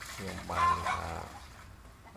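Domestic goose splashing in a metal basin of water, with a short high-pitched goose call about half a second in.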